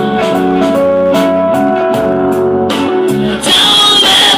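Hollow-body guitar strumming a run of chords between sung lines. A singing voice comes back in near the end.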